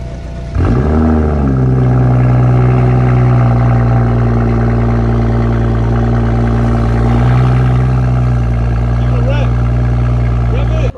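A BMW 3 Series sedan's engine starting: a short flare of revs about half a second in, then settling into a loud, steady idle. White exhaust vapour marks it as a cold start.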